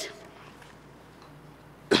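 A pause with only faint room tone, then near the end a single short, sharp cough close to the microphone.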